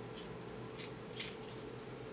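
Small scissors making short snipping cuts into the strong adhesive strip along the edge of a glass square: three faint snips.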